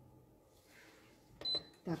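Faint room tone, then about a second and a half in a sharp click together with a short, high electronic beep.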